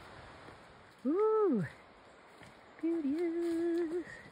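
A man's voice: a short 'oh' that rises and falls about a second in, then a steady hummed note held for about a second near the end.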